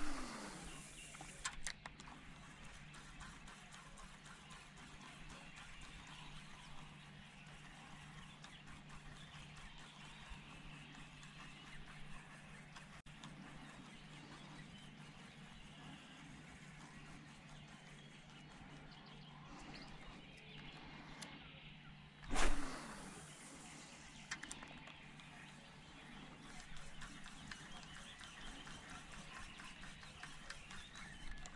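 Two casts with a spinning rod and reel, one right at the start and one about two-thirds of the way through. Each is a sharp swish with a falling whirr as the line pays off the spool. Between them is a faint, steady outdoor background with a low hum while the lure is retrieved.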